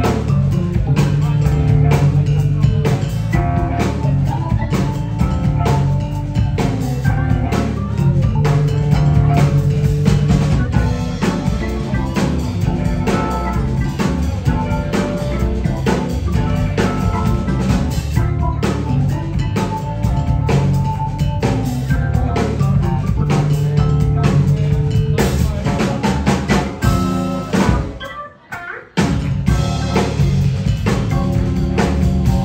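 Live funk instrumental from a trio of electric guitar, drum kit and keyboard, with a steady bass line under regular drum hits. About two seconds before the end the band stops dead for a moment, then comes back in.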